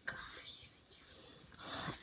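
Soft whispering, breathy and unvoiced, in two short stretches: one at the start and another building up near the end.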